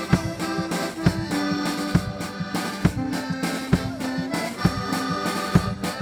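Folk band playing live: alto saxophone and accordions over a steady drum beat, with held melody notes and a strong beat a little under once a second.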